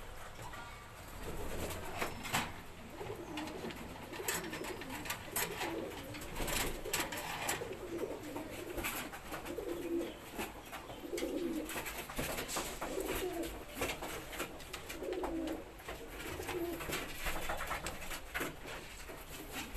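Domestic pigeons cooing, a run of low warbling coos about once a second, with scattered sharp clicks.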